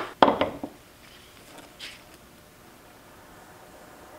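A short knock and scrape of a plastisol injector being set into the sprue of a clamped aluminium soft-plastic bait mold, then near-quiet while the plastisol is pushed in, with one faint scuff about two seconds in.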